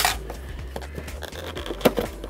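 Cardboard retail box of a GoPro hand and wrist strap being opened and handled: scattered small clicks and rustling, with a sharp click at the start and a louder one shortly before the end. Quiet background music runs underneath.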